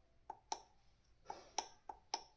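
Faint, short clicks, about five, from repeated presses of the down-arrow push button on a digital siren motor starter's keypad, stepping the high-voltage limit setting down toward 270 volts.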